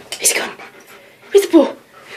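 A German Shepherd–Alaskan Malamute mix dog panting, with two short falling vocal sounds about one and a half seconds in.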